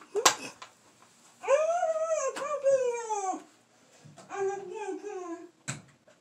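A dog whining in two long, drawn-out cries, the first high and arching up then down in pitch, the second lower and fairly level. A short knock comes just after the start and another near the end.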